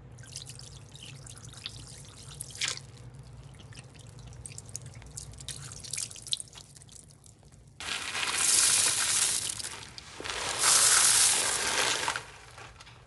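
Liquid dribbling from a squeeze bottle onto a soap-soaked sponge, with fine crackling and dripping from the suds. About eight seconds in, soap flakes are poured over the sponges in two loud rushing pours of about two seconds each.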